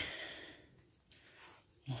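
Mostly quiet room tone between a woman's spoken words: her speech trails off at the start and the next words begin at the very end, with only a faint brief sound about a second in.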